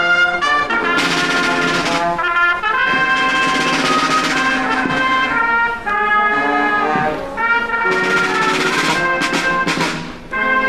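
Brass band playing a slow piece in long held chords.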